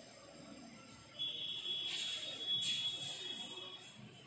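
A single steady high-pitched tone starts about a second in and holds for about two seconds, with a couple of faint scratchy strokes while it sounds.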